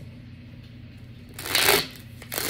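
Tarot cards being handled: one short papery shuffle of card stock about one and a half seconds in.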